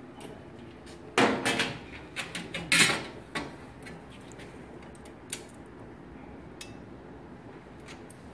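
Metal clatter and knocks as a perforated metal autoclave tray is handled and set down and the autoclave door is worked, a cluster of sounds over about two seconds early on. Then a couple of light, sharp clicks as tweezers touch the tray and the glass ampoules.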